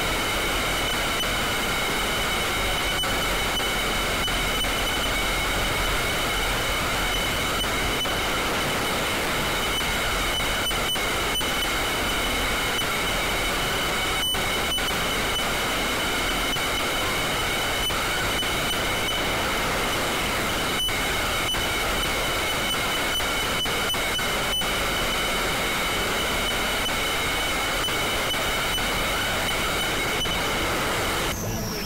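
Experimental noise drone: a dense, steady wall of hiss with several high held tones on top and a few sharp clicks scattered through it, with no beat.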